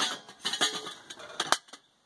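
Stainless steel camp pots, lids and cups knocking together as they are handled: a clank at the start, a few light knocks, and two sharp metallic clinks about a second and a half in.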